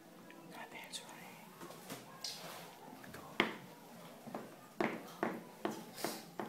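Hushed whispering from people keeping quiet, with several short sharp clicks in the second half.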